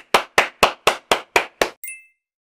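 One person clapping hands in a steady rhythm, about four claps a second, stopping shortly before the end. A brief high-pitched tone sounds just after the last clap.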